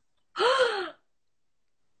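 A woman's shocked gasp, breathy and voiced, about half a second long, its pitch rising and then falling.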